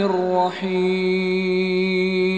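A male reciter chanting Quranic Arabic in melodic tilawah style: a short phrase ends, and from about half a second in he holds one long, steady note.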